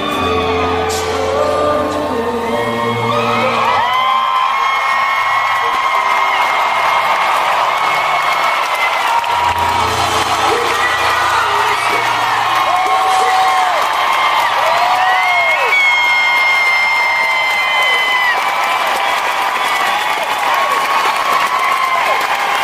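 Live country band playing, with a concert crowd cheering and whooping loudly over the music, many short rising and falling shouts through the whole stretch.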